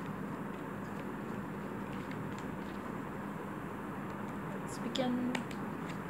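Steady background hiss with a few faint clicks of tarot cards being shuffled by hand, mostly about five seconds in. There is a short hum of a woman's voice at about the same point.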